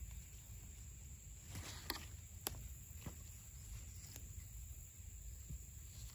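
Soft handling sounds of small peppers being picked off the plant: a few light clicks and leaf rustles over a low steady rumble.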